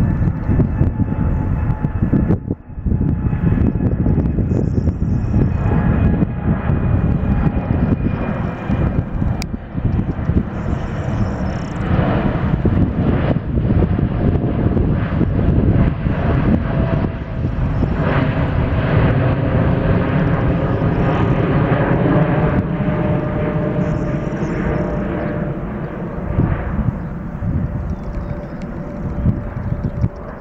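Boeing 787 jet engines at takeoff climb thrust as the airliner passes close overhead, a continuous loud roar with whining tones that fall slightly in pitch. The sound eases near the end as the aircraft climbs away.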